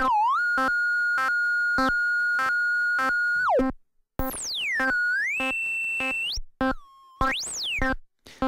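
Groovesizer's 8-bit Auduino granular synth sounding a note that pulses about every 0.6 s while its tone knobs are turned. The pitch glides and then holds, the sound cuts out twice, and near the end it sweeps sharply up and back down.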